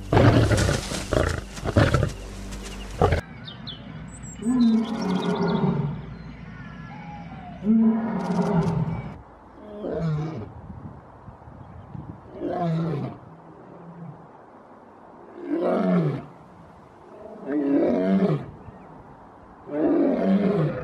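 A male lion roaring in a bout: about seven roars, each falling in pitch, the first two longer and the rest shorter, coming every two to three seconds.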